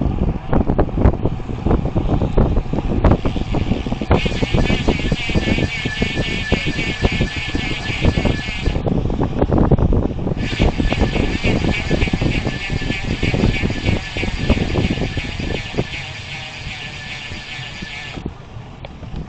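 Wind rush and road rumble on a bicycle-mounted camera at about 30 km/h. From about four seconds in, with a short break near the middle, the rear hub's freewheel gives a high, even buzz as the rider coasts.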